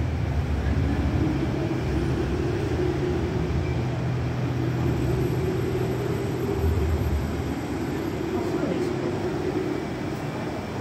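Steady low drone of electric trains at a station platform, a constant hum with a wash of station background noise.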